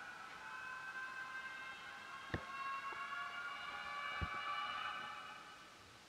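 An eerie, sustained high-pitched drone from a horror cartoon's soundtrack: several steady, slightly wavering tones held together that fade away near the end, with two faint clicks partway through.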